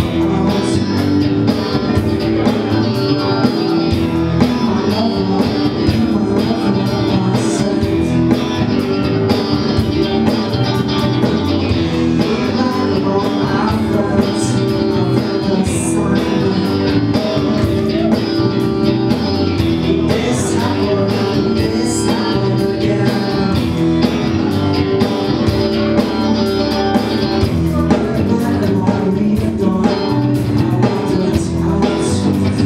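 A rock band playing live: electric guitar, electric bass and drum kit, loud and steady throughout.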